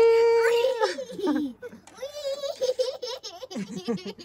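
A young child's voice: a loud, high, long-held cry that falls away about a second in, followed by wavering, sing-song vocalizing without words.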